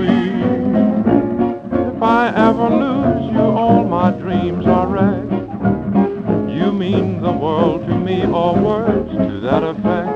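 A 1928 jazz dance orchestra playing a fox-trot, played back from a 78 rpm shellac record.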